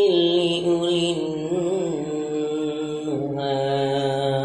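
A man's voice reciting the Qur'an in a melodic, drawn-out style, holding long sung notes that waver and glide slightly. The pitch steps down about three seconds in.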